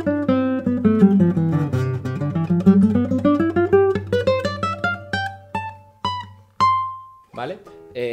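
Nylon-string classical guitar playing a C major scale as a quick run of single plucked notes. The run steps down for about two seconds, then climbs back up, and ends on a few separate higher notes, the last left ringing for about a second.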